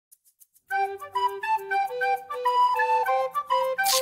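Short intro jingle: a bright, flute-like melody of quick stepping notes over light accompaniment, starting under a second in. Near the end a noisy swish sound effect begins over the music.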